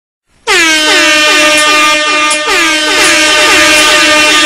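Loud DJ air-horn sound effect opening a reggae remix: it starts about half a second in and keeps blaring, its pitch dipping and recovering about three times a second.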